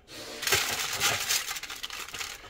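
Continuous dry rustling and crinkling as a flour-coated chicken piece is lifted from the bowl and pressed into an air fryer basket lined with aluminium foil.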